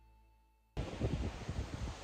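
Quiet background music fading out. About three quarters of a second in, it cuts to strong wind buffeting the microphone in uneven gusts.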